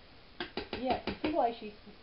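Mostly a person speaking, preceded by a few sharp clicks about half a second in.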